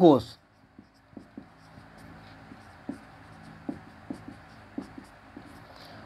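Marker pen writing on a whiteboard: faint, irregular scratchy strokes and small taps of the tip on the board.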